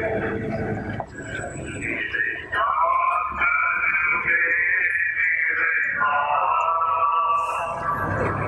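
Voices singing or chanting a devotional hymn with long held notes. It grows louder about two and a half seconds in and holds steady.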